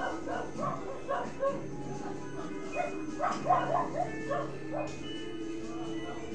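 Dog barking in quick short yaps, in two runs: one at the start and one from about three to five seconds in, over steady background music.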